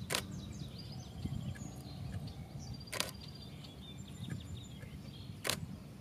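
Nikon D500 shutter firing three single frames, near the start, at about three seconds and at about five and a half seconds. The demonstration compares its normal and quiet release modes, and they sound nearly alike, maybe a touch more silent.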